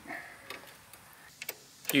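A few faint, sparse metallic ticks from a thread tap being turned slowly by hand into a bolt hole.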